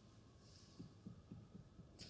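Near silence: room tone, with a few very faint low taps about a second in.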